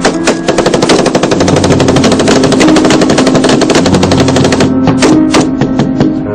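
Automatic gunfire: a long run of rapid shots starting about half a second in and stopping just before five seconds, followed by a few separate single shots near the end.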